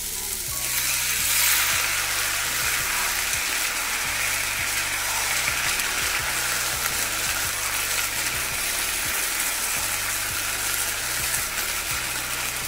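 Soaked sago pearls and vegetables sizzling in a hot wok, with the light scrape of a wooden spatula stirring them. The sizzle swells about half a second in, as the wet sago goes into the hot oil, and then holds steady.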